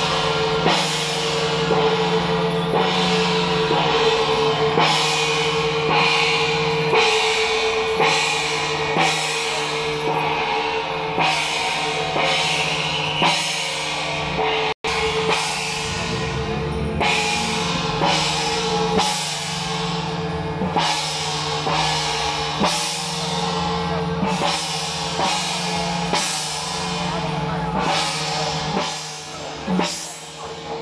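Temple-procession percussion music: drums and cymbals striking about once a second in a steady beat over a long, steady held note.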